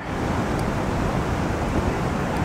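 Rough surf breaking steadily along a rocky shore, from a sea stirred up by a typhoon swell, with wind buffeting the microphone.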